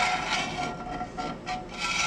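Metal spatula scraping along the bottom of a new cast iron skillet full of boiling water, in repeated strokes with a thin squeak that comes and goes. The scraping loosens stuck-on residue before the pan is re-seasoned.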